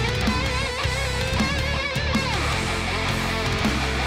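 Heavy metal band playing live: distorted electric guitars carry a wavering melodic lead line over heavy low riffing and drums.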